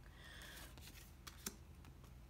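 Faint handling of tarot cards, near silence: a card slid off the top of the deck with light rustling and one soft click about one and a half seconds in.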